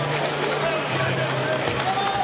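Crowd of fight spectators cheering and shouting, many voices overlapping, over a steady low drone that shifts pitch about a second in.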